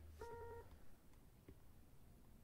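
Near silence: room tone, with one brief faint beep-like tone a moment in, lasting about half a second.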